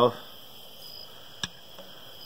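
Quiet workshop room tone with a faint, steady high-pitched tone, broken by a single sharp click about a second and a half in.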